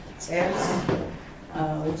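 A woman speaking, with a short noise under her voice about half a second in.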